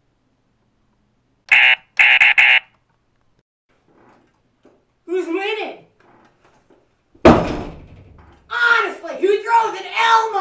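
Operation board game's buzzer going off as the tweezers touch the metal edge of a cavity: a short buzz, then a longer one with brief breaks, about a second and a half in. Later a loud thump, then voices.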